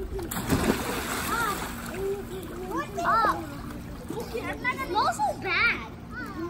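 Children splashing in a swimming pool, with a burst of splashing water about half a second in, and high children's voices shouting and calling out between smaller splashes.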